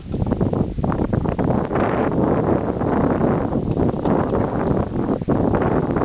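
Wind buffeting the camera's microphone: a loud, steady, rough rush with no pauses.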